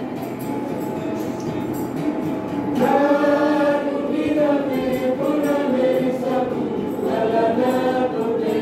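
A youth choir singing a church song in the Kewabi language, several voices together in long held notes. A louder, fuller phrase comes in about three seconds in.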